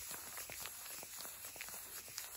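Two pieces of paper rubbed against each other under a flat hand: a faint, irregular rustling and scratching with small ticks.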